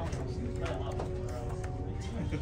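Background music with held notes over chatter of voices in the room, with a few sharp clicks near the middle.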